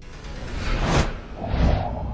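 Whoosh sound effects over music for an animated logo: a rising swoosh that peaks about a second in, then a shorter second swoosh near the end, over a deep low rumble.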